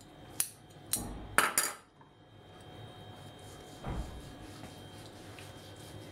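A few sharp clinks of a china plate and metal kitchen utensils being handled and set down on a granite countertop, the loudest about a second and a half in, then a soft low thump about four seconds in.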